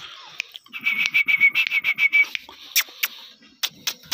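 A dog whimpering: a rapid string of short, high-pitched whines lasting about a second and a half, followed by a few sharp clicks.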